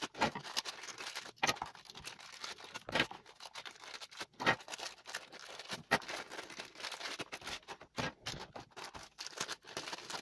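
Thin clear plastic bags crinkling and rustling in the hands as small plastic camera mounts are unwrapped, with irregular light clicks of plastic parts.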